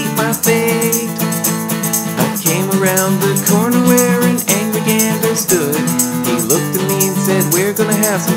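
A comic song: a voice singing a verse over strummed guitar, with a shaker ticking a steady beat.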